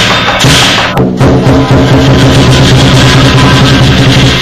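Loud lion dance percussion: a large barrel drum beaten in a fast, driving rhythm, with a bright metallic cymbal wash over it. There is a brief break about a second in, then it carries on.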